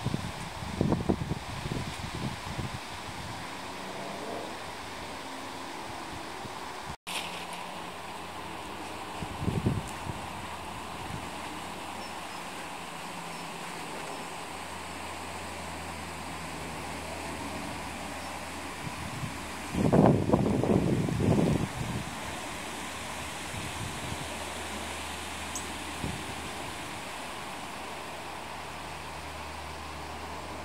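Wind buffeting the microphone in gusts, strongest just after the start, around ten seconds in and a little after twenty seconds, over a steady outdoor hiss and low hum.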